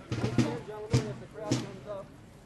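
A drum struck in a slow, steady beat, about two beats a second, with voices talking underneath.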